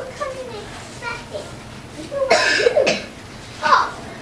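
Children's voices at a distance, with a loud, harsh vocal burst a little past halfway and a shorter one near the end.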